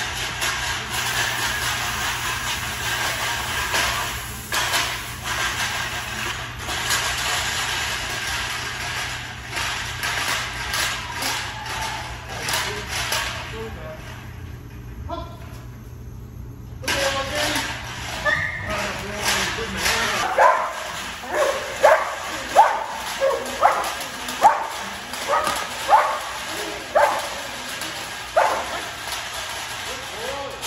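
A dog barking repeatedly: about a dozen short barks, one every half second to second, in the last third. Before that there is a steady background noise with scattered knocks.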